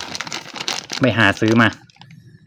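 Clear plastic zip bag crinkling and crackling as it is handled, most densely through the first second.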